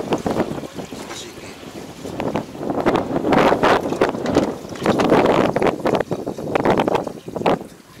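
Water running from a hose into a plastic jug, weaker at first and heavier from about two seconds in, with wind noise on the microphone.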